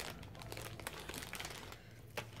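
Packaging crinkling faintly as it is handled, with many small scattered clicks.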